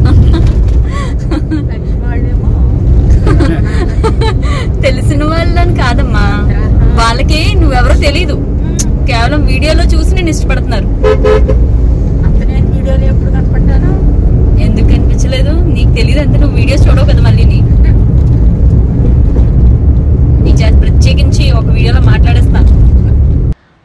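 Steady low rumble of road and engine noise inside a moving car's cabin, under women talking. A vehicle horn sounds briefly about eleven seconds in.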